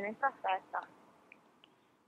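A woman's voice over a telephone line, narrow and thin, finishing a phrase and trailing off. Near silence follows for about the last second.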